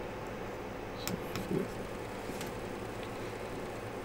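Steady fan hum from bench electronics, with a few faint short clicks about a second in and again midway.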